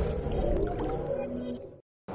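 Electronic intro music and sound effects of a channel logo sting dying away in a fading tail, cut off to silence near the end.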